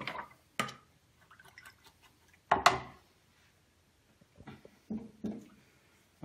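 A fan paintbrush being rinsed in a jar of water: a few short splashes and knocks, the loudest about two and a half seconds in.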